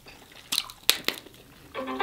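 A few sharp cracks and crackles as crab shell is pulled apart by hand. Near the end, a phone ringtone starts playing a tune.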